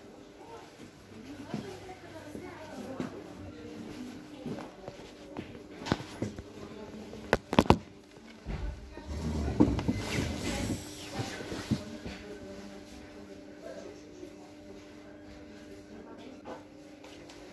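Indoor ambience with faint background voices and music. There are two sharp knocks about seven and a half seconds in, followed by a low rumble of a phone being handled and moved for a couple of seconds.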